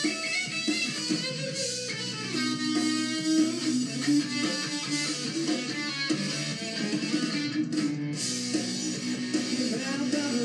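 Rock band playing an instrumental passage led by electric guitar, with bass and drums beneath, heard through a television's speakers with almost no low bass.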